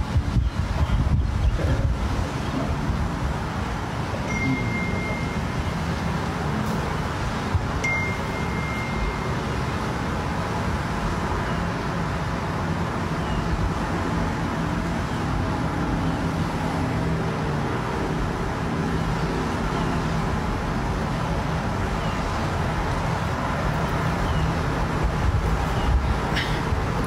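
Steady rushing background noise with a low rumble, and two short high-pitched beeps about four and eight seconds in.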